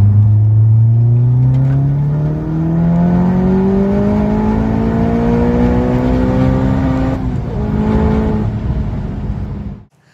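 Tuned Audi S1 with a 648 PS prototype 2.0 TSI four-cylinder turbo engine accelerating hard from 100 to 200 km/h, its note climbing steadily in pitch. There is a brief dip about two and a half seconds in and a gear change about seven seconds in, and the sound cuts off suddenly near the end.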